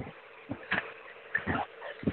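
A few short, scattered squeaks and noises coming through a participant's unmuted microphone on a video call.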